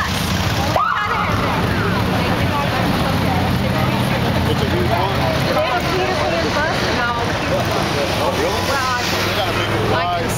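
Police motorcycle engine running steadily at idle, a low hum, under the talk of a crowd of onlookers.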